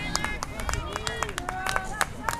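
Players calling out to one another during an outdoor soccer game: several short, high-pitched shouts and a held call near the end, over a steady low outdoor rumble with scattered sharp clicks.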